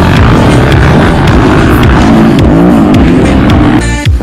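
Dirt bike engine revving hard close to the microphone, its pitch rising and falling with the throttle, with music underneath.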